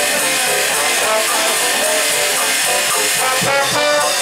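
A small live jazz band playing, a melody line carried over a drum kit with steady cymbal time.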